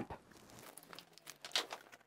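Faint handling noise: scattered light clicks and rustling as a smart LED bulb is twisted out of a floor lamp's socket by hand.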